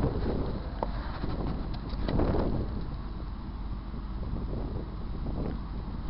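Wind from a snowstorm buffeting the microphone: a steady low rumbling noise that swells at the start and again about two seconds in.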